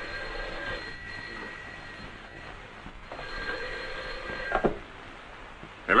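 Telephone bell ringing twice, steady rings with a short gap between them; the second ring ends in a click.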